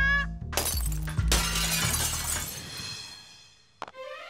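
A sharp hit, then a crash about a second in that rings and fades away over about two seconds, with background music underneath.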